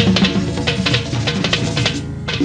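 Live vallenato band playing an instrumental passage: a button accordion's chords over a quick, dense run of drum strokes.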